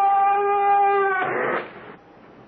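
The show's signature creaking door: a long, slightly wavering hinge creak that breaks off about a second in as the door shuts, with a short rough thud that fades out.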